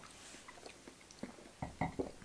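Faint mouth sounds of several people sipping and swallowing beer, with a few short soft clicks and knocks in the second half.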